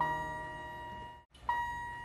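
Soft background music: a held keyboard-like note fades away, the sound drops out briefly, and a second note comes in about one and a half seconds in and fades in turn.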